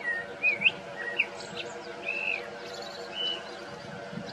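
Birds chirping in short whistled calls, several in quick succession in the first two seconds, over the steady drone of a paramotor's engine and propeller overhead.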